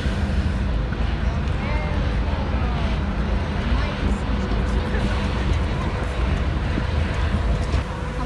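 Low, steady rumble of the Seajets high-speed catamaran ferry Champion Jet 2 running its engines as it manoeuvres alongside the quay, with faint voices in the background.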